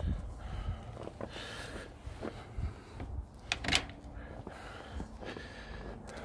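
Light knocks and handling noise from walking with a handheld camera, with a sharp click or latch-like knock about three and a half seconds in.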